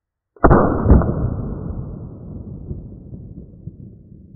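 Heritage Barkeep Boot single-action revolver firing a .22 LR round, the report slowed down with the slow-motion picture: a sharp low crack, a second sharp hit about half a second later, then a long fading rumble.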